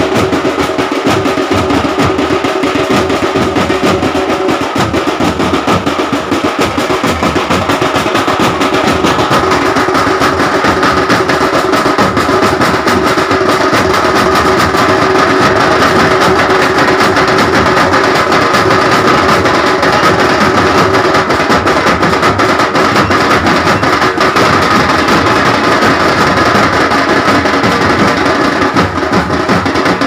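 Loud, fast, continuous drumming with dense rapid strokes, over a few steady held tones. It keeps up without a break throughout.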